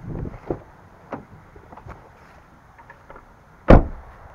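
Rustling handling noise on the camera's microphone with a few soft knocks, then one sharp, loud thump near the end.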